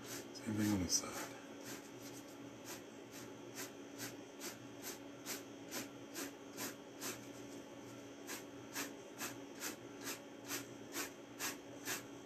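A chip brush loaded with oil paint stroking back and forth across a canvas, about two or three even strokes a second, blending horizontal water. A short falling hum from a voice about half a second in.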